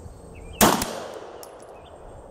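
A single pistol shot with a 124-grain round, about half a second in, its report echoing and fading over about a second.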